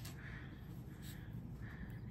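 Quiet room tone with a low, steady hum and no distinct sound events.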